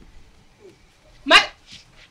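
A dog barks once, a single short bark about a second and a half in, over quiet background.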